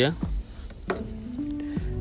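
Soft background music with held notes stepping up in pitch, and a single sharp click about a second in as a key is turned in the scooter's key switch.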